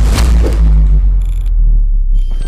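Logo-reveal sound effect: a hit at the start that swells into a deep, loud boom and a long low rumble, with a brief glittery shimmer just after a second in.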